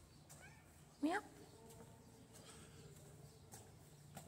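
A cat giving one short meow about a second in, its pitch rising steeply, against otherwise quiet room tone.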